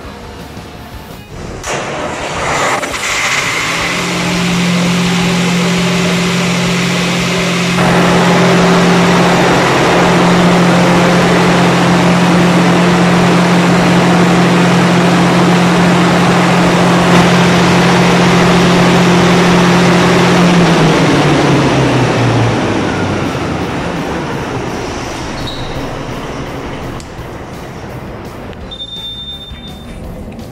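Ship's emergency generator diesel engine, started by the automatic starting sequence test, coming up to speed and running loudly and steadily. About two-thirds of the way through it shuts down, its pitch falling as it runs down, and the noise fades away.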